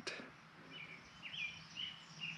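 A bird chirping faintly: a few short, high calls about every half second.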